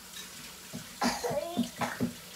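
Water running from a kitchen tap as a cup is rinsed. In the second half a child coughs a few times, loud and sudden over the water.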